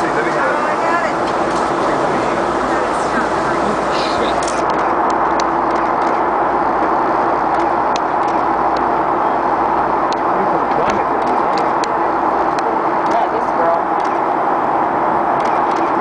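Steady drone of an aircraft cabin in flight: engine and airflow noise heard from inside the plane.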